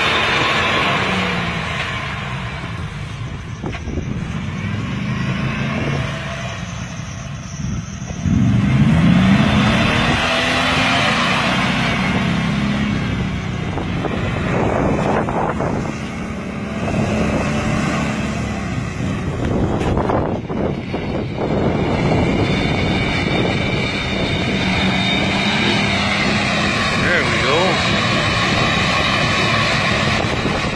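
Off-road 4x4's engine revving hard under load as it ploughs through a deep mud and water hole, with mud and water churning around it. The revs climb sharply about eight seconds in, the loudest moment, then stay high.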